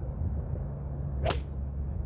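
A 4 iron swung down and striking a golf ball off a turf mat: one sharp, brief crack just past halfway through.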